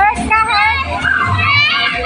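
Children's high voices calling and chattering over one another while they play, with faint music underneath.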